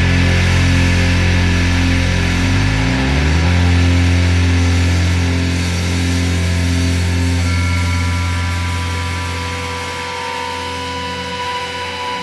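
Heavily distorted electric guitar and bass holding a low droning chord in a thrashcore recording, with a pitch bend about three seconds in. From about halfway the low end thins, high feedback tones ring out, and the chord fades.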